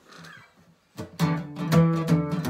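Steel-string acoustic guitar strummed, starting about a second in after a quiet first second: the opening chords of a song.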